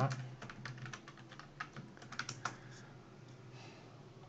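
Typing on a computer keyboard: a quick run of keystrokes entering a password, which stops about two and a half seconds in.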